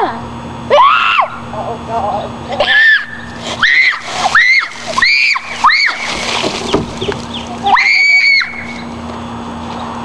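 A boy giving a series of short, high-pitched screams as a bucket of ice-cold water is dumped over his head, with the water splashing over him around the middle and one longer scream near the end.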